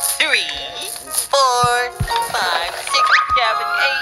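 Children's cartoon background music with high, wavering cartoon voice sounds over it, and a slowly rising tone near the end.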